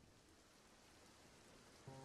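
Near silence: faint hiss, with a faint steady chord starting near the end.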